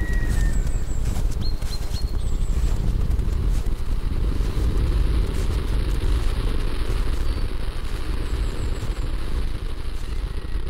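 Wind buffeting the microphone in an open field, a continuous rumbling roar. A few faint high bird chirps come in the first three seconds.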